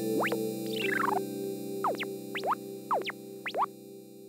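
Short synthesizer jingle: a held low chord under a series of quick electronic pitch swoops, some rising and some falling, fading out near the end.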